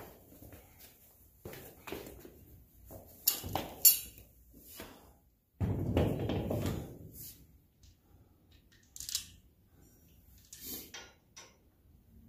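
Clatter of tools and a heavy off-road tyre and wheel being handled and fitted onto a side-by-side's front hub: scattered knocks and metal clinks, with one louder thump about five and a half seconds in that dies away over a second or so.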